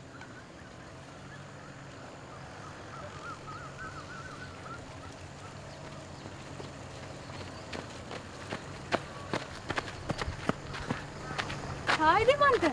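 Footsteps of people jogging on a paved path, sharp irregular steps about two or three a second, growing louder in the last few seconds as they come close. A bird warbles faintly in the first few seconds over a low steady outdoor hum.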